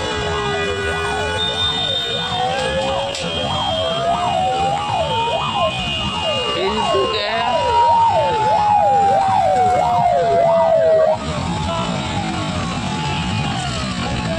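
Several sirens sounding at once: quick rising-and-falling yelps, about two or three a second, over a slower tone that climbs for several seconds and then slides back down. They cut off suddenly about eleven seconds in.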